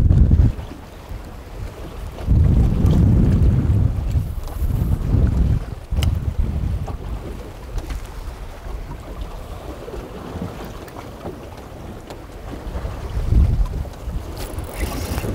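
Wind buffeting the microphone in gusts, loudest about two to four seconds in and again near the end, over a steady wash of choppy waves around the boat.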